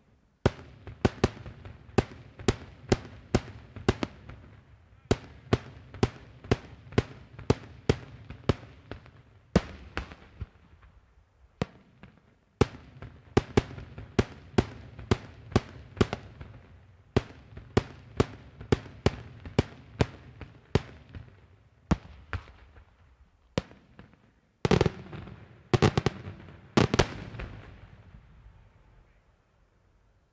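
Daytime aerial fireworks shells bursting in a rapid series of sharp bangs, about two or three a second, in long runs with brief pauses. A louder, denser cluster of bursts comes near the end.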